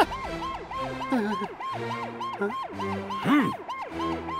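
Police car siren in a fast wail, about five quick rises and falls a second, over background music.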